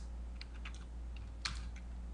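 A few light, scattered computer keyboard keystrokes, the loudest about one and a half seconds in, over a low steady hum.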